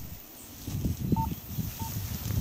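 Low, uneven rumble of wind buffeting the microphone outdoors. Two short, same-pitched high notes come about a second in and again near the end.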